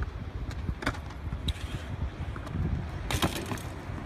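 BMX bike riding on a concrete skate park surface over a low, steady rumble of tyres and wind on the microphone, with small rattles. A sharp clatter a little after three seconds in is the bike hitting the concrete on a near-miss tailwhip attempt.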